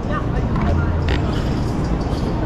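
Busy city-street noise heard from a moving bicycle: a low, steady rumble with traffic sounds and a short hiss about a second in.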